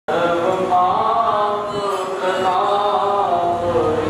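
A group of young ashram students (rishikumars) chanting a stuti, a devotional hymn of praise, together, their voices held in long, slowly moving notes.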